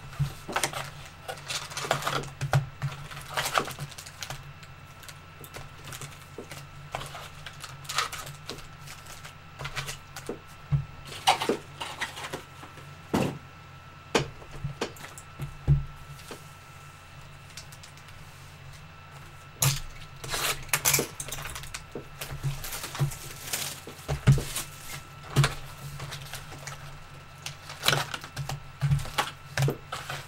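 Trading card boxes and packs being handled and opened: scattered crinkles, clicks and taps coming in short clusters, over a faint steady hum.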